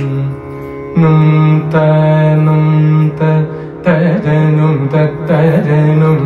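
Male Carnatic vocalist singing over a steady electronic tanpura drone: first long held notes, then from about four seconds in ornamented phrases that slide and oscillate in pitch.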